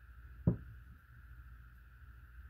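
A single dull knock about half a second in as a hand takes hold of the side focus knob on a Delta Stryker HD 4.5-30x56 rifle scope; the well-damped knob then turns with no audible clicks over a faint steady hiss.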